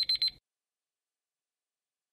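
Countdown-timer alarm sound effect: a quick run of about six high-pitched beeps lasting about half a second at the very start, signalling that the quiz timer has run out.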